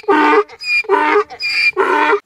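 Donkey braying: a fast run of alternating hee-haw calls, about five in two seconds, loud.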